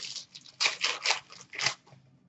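Trading cards and a foil pack wrapper being handled, making about four short papery swishes and crinkles.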